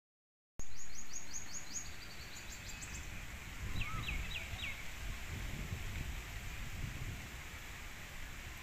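Wild birds calling outdoors. A quick run of high chirps, about four a second, lasts until about three seconds in, and four short falling notes follow about four seconds in, over a steady low rumble.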